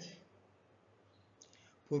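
A man's lecture voice trails off, then comes a pause of low room hiss with a faint click about one and a half seconds in, and the voice starts again just before the end.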